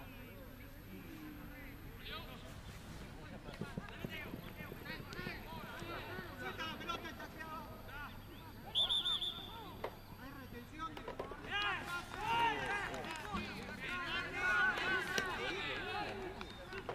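Players and spectators shouting across a rugby pitch, with a short, high referee's whistle blast about nine seconds in.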